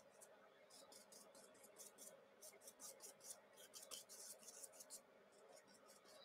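Near silence, with faint, irregular scratchy strokes of a big paintbrush working acrylic paint across sketchbook paper.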